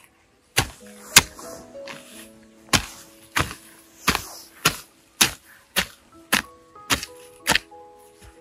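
Hand hoe chopping into grassy soil, about a dozen sharp strikes at an even pace of roughly two a second, with background music underneath.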